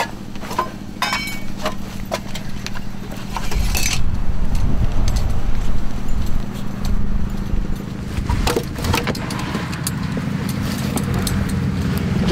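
Steady low rumble of a running heavy engine, growing louder about four seconds in. Sharp clinks and rattles of metal gear are heard over it in the first few seconds.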